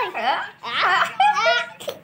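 A toddler and a woman laughing together in a run of short, breathy bursts.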